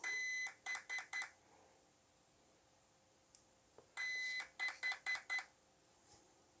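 RC car's brushless ESC beeping in programming mode as it cycles through its item list, each item number sent as a long beep (five) plus short beeps (one each). First comes a long beep followed by three short beeps, and about three seconds later a long beep followed by four short beeps.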